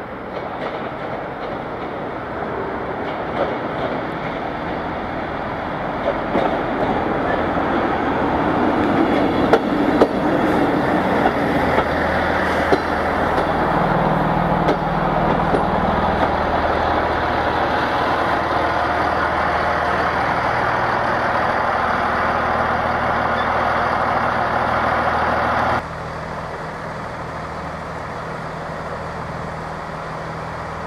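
A Class 158 diesel multiple unit running into the platform: wheels on the rails and its underfloor diesel engines grow louder as it draws near and passes close by, with a few sharp clicks from the wheels. Near the end the sound drops suddenly to the steady hum of the unit's engine as it stands at the platform.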